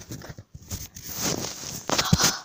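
Handling noise: a phone moving and brushing against a shirt close to the microphone, with irregular light knocks and rustling.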